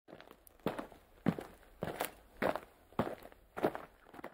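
Footsteps of a person walking at a steady pace: six even steps, a little under two a second.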